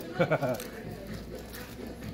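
A man's short laugh, then low, steady room noise.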